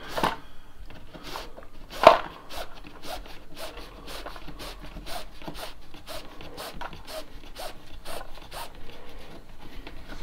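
Paracord being threaded and pulled through a flat woven knot, rubbing against itself in a run of short scrapes, with one sharp tap about two seconds in.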